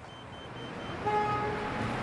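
Street traffic noise that swells slightly, with a vehicle horn sounding once for about a second, starting about a second in.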